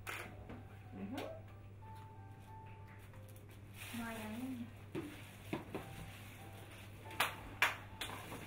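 Mostly quiet room with faint murmured voices and a low steady hum, broken by a few sharp light clicks in the second half.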